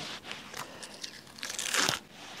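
Dry, papery outer skins being peeled and torn off a harvested onion that is curing for storage: a run of small crackling and crinkling sounds, loudest shortly before the end.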